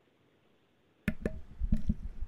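Near silence for about a second, then a quick run of five or so sharp clicks and knocks.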